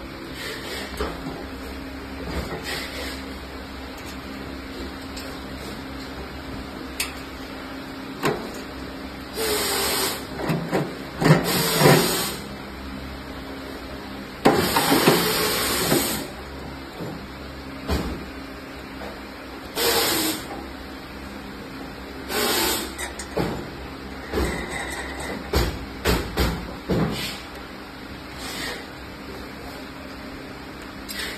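Plastic and metal parts of a vending machine's dispensing wheel being handled and fitted: bursts of knocking, scraping and rattling come and go, the loudest in the middle, over a steady background hum.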